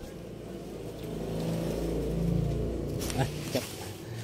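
A motor vehicle engine passes close by, swelling to a peak about two seconds in and then fading away, with a few short knocks near the end.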